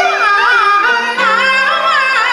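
A woman singing in Peking opera style, a high voice held on long notes with wide, wavering vibrato and sliding ornaments between pitches.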